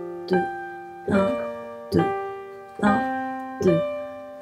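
Piano played slowly with both hands together, working through one arpeggio motif in which each left-hand note goes with two right-hand notes. There are about five evenly spaced strikes, each left to ring and fade.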